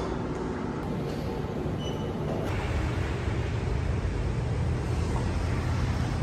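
Road traffic: a steady low rumble of vehicle engines and tyres, growing fuller from about two and a half seconds in.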